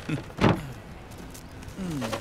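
A single short, loud thump about half a second in.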